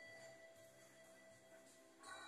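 Faint background music of sustained, ringing tones, with no sounds of movement or speech above it.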